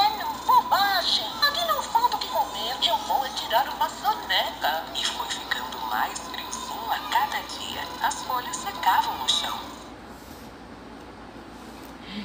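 A recorded high-pitched storytelling voice played through the small built-in speaker of a children's push-button sound book. It stops a little before the end, leaving only faint hiss.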